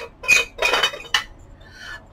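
A glass long-neck light bulb being unscrewed from the metal socket of a 1950s chrome-and-enamel flying saucer lamp. A few sharp clinks and a short scrape of the bulb's base turning in the socket come in the first second or so, followed by quieter handling.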